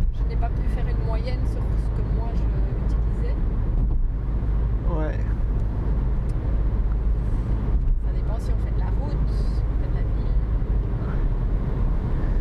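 Inside the cabin of a moving Mini Countryman with a 1598 cc diesel engine: a steady low engine and road rumble.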